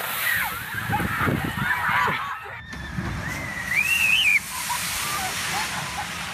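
Rushing and splashing water with people shrieking and yelling over it, including one long rising-and-falling shriek about two-thirds of the way through.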